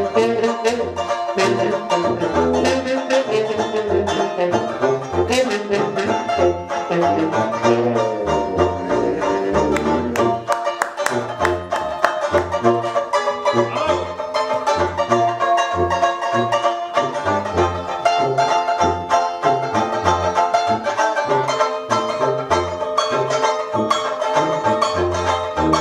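Traditional jazz band playing live: a bass tuba plays a steady bass line under strummed banjo chords, with a trombone playing over them.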